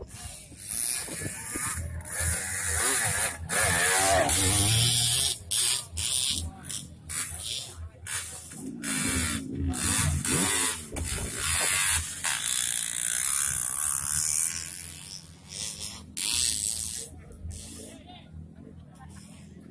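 Dirt bike engine revving hard in on-off bursts as the bike labours up a slick mud climb, with spectators' voices.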